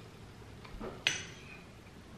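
A metal spoon clinks once against a cut-glass dessert bowl about a second in, ringing briefly.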